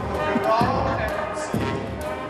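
Two heavy thumps about a second apart, under a performer's voice on stage.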